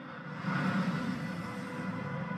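Steady, deep rumble of an aircraft in flight from a film soundtrack, swelling about half a second in.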